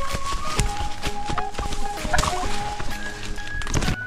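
A wild turkey calling briefly as it is chased through undergrowth, with leaves and brush rustling. Background music with held notes plays over it.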